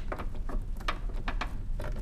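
Headlamp aim adjuster being turned with a long Phillips screwdriver: the screwdriver working the toothed adjuster wheel on the back of a Spyder projector headlight. It makes an irregular run of short clicks.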